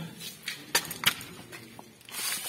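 A few sharp knocks and clicks of a stone being shifted against the foot of a rusty steel door. The stone is what is stopping the door from closing. The two loudest knocks come close together a little under a second in.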